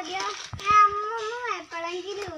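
A child's voice singing or chanting a few drawn-out notes that waver up and down in pitch.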